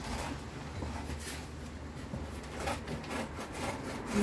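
Large sheet of brown corrugated cardboard being handled and folded, with its surfaces rubbing and scraping and a few soft knocks.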